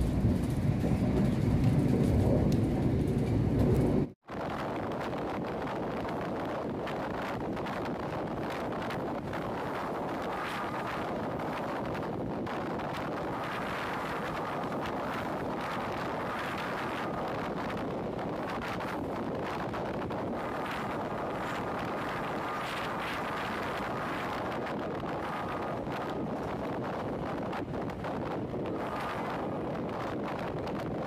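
Loud low rumble of another train passing close alongside, cut off suddenly about four seconds in. It gives way to the steady rushing of an express passenger train running at speed, heard from inside the coach at the window, with a faint thin whine that comes and goes.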